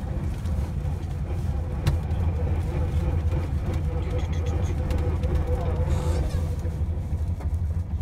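1973 Volkswagen Beetle's air-cooled flat-four engine idling steadily, heard from inside the cabin, with the windshield wipers sweeping icy glass and a single click about two seconds in.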